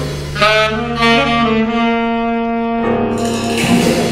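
Live jazz: a saxophone plays a phrase and then holds one long steady note before moving on, over upright bass accompaniment.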